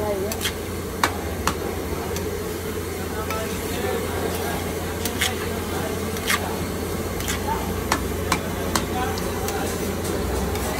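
A cooking utensil knocking against a metal pot: about ten sharp clicks at uneven intervals, over a steady low hum and background noise.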